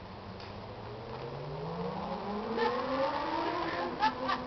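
A motor vehicle's engine accelerating, its pitch rising steadily and growing louder over a few seconds.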